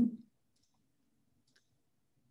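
Near silence, broken by one faint, short click about one and a half seconds in.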